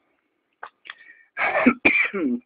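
A man coughing, two loud coughs starting about one and a half seconds in, after a couple of faint clicks. The coughing comes from acetone fumes given off while melting super glue.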